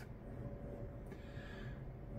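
Quiet room tone: a steady low hum with faint background noise and no distinct knocks or clicks.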